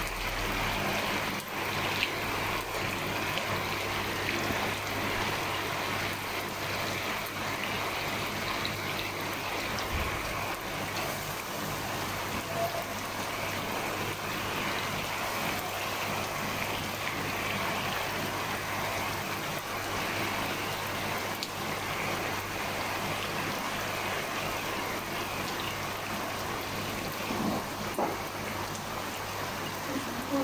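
Steady rain falling on a garden and a swimming pool, drops hitting the pool water and the ground in an even, unbroken patter.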